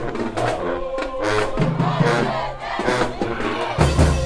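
Loud music with many voices chanting and shouting together over it; a heavy, steady drumbeat comes in just before the end.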